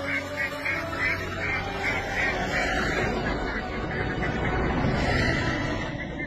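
A large flock of domestic ducks quacking together in a dense, continuous chorus, over a low steady hum.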